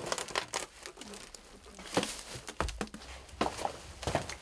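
A plastic bag crinkling and things being handled and shifted as someone rummages through belongings, rustling on and off with a few sharper knocks, the loudest about two seconds in.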